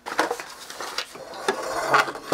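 Handling noise on a wooden workbench: several light clattering knocks and scrapes of metal and wood as things are moved about, the loudest near the end.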